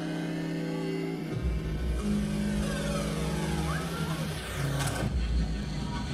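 Electronic show intro played through a concert hall's sound system: a held synth chord, then about a second and a half in a deep rumble comes in with falling pitch sweeps. A sudden burst of noise about five seconds in gives way to a rough, noisy rumble.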